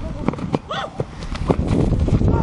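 Running footsteps of several flag football players thudding on grass close by, a few irregular thumps, with a brief shout early on and a low rumble building in the second half.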